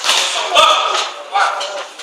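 Sharp slaps of boxing gloves landing punches, with a heavier thud just over half a second in, over loud shouting voices.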